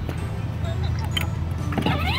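Battery-powered 6-volt ride-on toy car's electric motor and gearbox running with a steady low drone as the car drives along.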